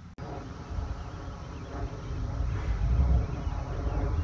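Low outdoor background rumble that swells and fades, with no distinct event, typical of wind on the microphone or far-off traffic at an open field.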